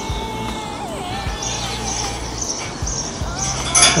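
A thin whistling tone holds steady, then turns into a wavering warble about a second in, over a steady low rumble. Near the end there is a short metal clink as the temperature probe wire is handled against the Weber Smokey Mountain's steel cooking grate.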